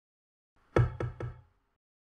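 Three quick knocks, about a quarter of a second apart, each with a short low ring.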